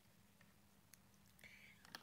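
Near silence: room tone, with a faint breathy sound about a second and a half in.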